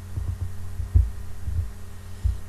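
A steady low electrical hum under the recording, with a few soft, dull low thumps, the loudest about a second in.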